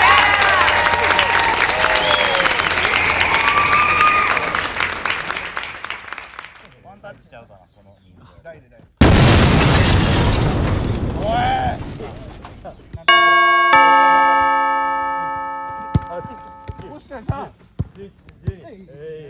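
Edited-in sound effects: about six seconds of loud shouting voices over a rushing noise that cuts off abruptly, then a sudden boom about nine seconds in that fades over a few seconds, then a bright bell-like chime struck twice in quick succession that rings and fades.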